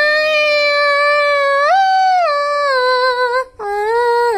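A high singing voice holding one long note through a karaoke machine. The note steps up in pitch about halfway through and then eases back down. Near the end it breaks off briefly, then a shorter, lower note follows.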